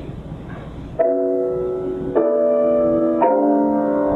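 Grand piano playing slow, sustained chords, starting about a second in, with a new chord roughly every second. It is a short musical example of harmony built on fourths.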